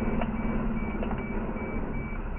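A vehicle reversing alarm sounding a steady run of short high beeps, about two and a half a second, over the low running of a fire truck's engine.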